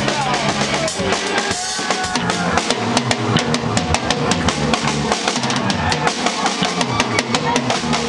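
A drum kit played in a live rock band: kick drum, snare and cymbal hits in a steady, busy beat, with a bass line moving underneath.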